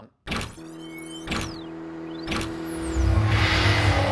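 Produced logo sting made of sound effects: sharp hits and whooshes with whistling glides, one falling and one rising, over a steady drone. It builds into a loud low rumble about three seconds in.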